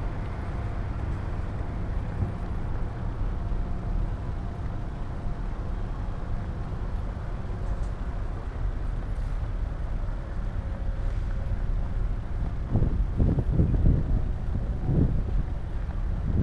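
Steady outdoor rumble of wind on the camera microphone mixed with distant road traffic. About three-quarters of the way through, several louder gusts buffet the microphone in quick succession.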